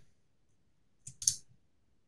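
A few quiet computer keyboard clicks about a second in, a key press that runs a typed terminal command.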